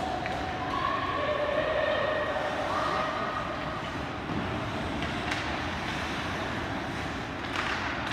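Ice hockey rink din: voices calling out in long held shouts that carry across the ice, then two sharp clacks of hockey play, about five and seven and a half seconds in.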